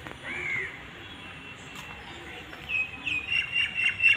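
Birds calling: one arched call just after the start, then a run of short, repeated high calls from about three seconds in.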